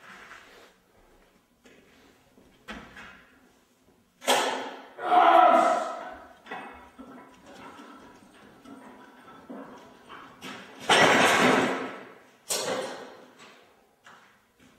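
Strongman lifting and carrying a 365 kg yoke: a loud strained shout of effort about four seconds in as the yoke comes up. About eleven seconds in comes a heavy clank and thud as the plate-loaded yoke is set down, with a shorter knock just after.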